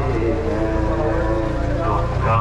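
A voice chanting a mourning chant in long held notes, over a steady low rumble.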